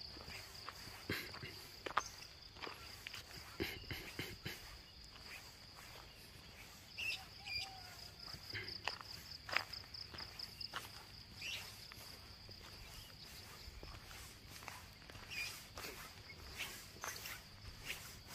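Footsteps of someone walking along a roadside, with irregular light scuffs and steps, under a steady high-pitched chirring of insects.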